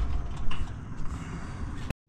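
A low, steady engine rumble that grows gradually quieter, with a single thump about half a second in. It cuts off abruptly near the end.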